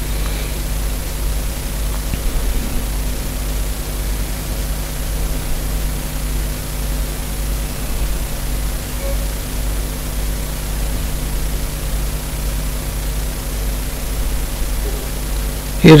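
Steady low electrical hum with faint hiss: the background noise of the recording chain, with no other sound.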